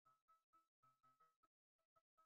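Near silence: only very faint, choppy snatches of a steady tone that cut in and out several times a second.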